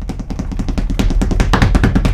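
A fast drum roll in a music cue, its strokes growing louder throughout and breaking off sharply just after the end.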